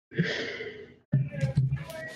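A person sighs audibly, a breathy exhale of nearly a second, then makes a low voiced murmur with small mouth clicks before starting to speak.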